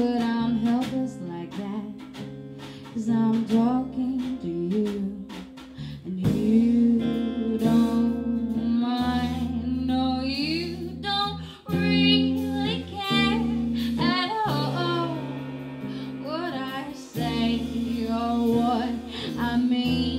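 Live band song: a woman singing a melody over strummed acoustic guitar, electric bass guitar and drums.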